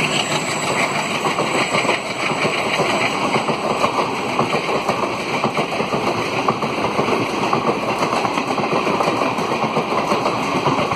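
A passing express train's passenger coaches rolling by close on the adjacent track: a steady, loud rush of wheels on rails with a rattle of wheel beats running through it.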